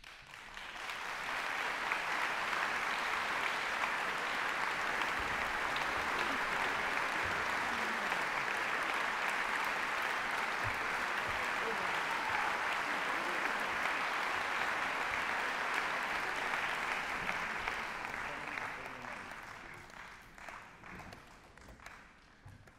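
Audience applauding: the clapping breaks out suddenly, swells within about two seconds, holds steady, then dies away over the last few seconds into a few scattered single claps.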